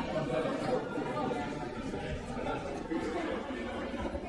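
Many people chatting at once in a large chamber, a steady murmur of overlapping voices with no single speaker standing out.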